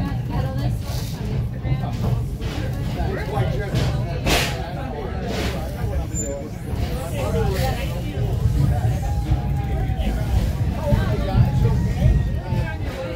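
Passenger train coach rolling along the track with a steady low rumble and a few sharp knocks, under indistinct chatter from passengers in the car.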